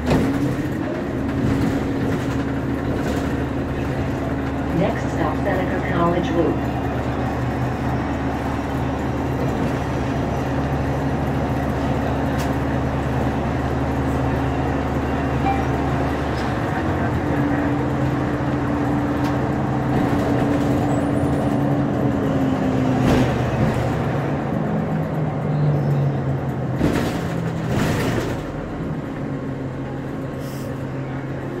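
City bus engine and drivetrain droning steadily, heard inside the passenger cabin. Its pitch shifts about halfway through and rises briefly near the end as the bus changes speed. A few sharp knocks sound near the end.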